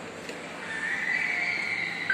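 Mitsubishi passenger elevator giving a drawn-out high-pitched squeal, about a second and a half long, that swells and then fades.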